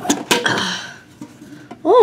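Pokémon card tin packaging being opened by hand: two sharp clicks near the start and a brief scraping rustle of cardboard and plastic, which dies away after about a second.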